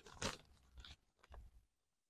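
Sheets of paper rustling faintly as they are handled close to a microphone, in three short crinkles.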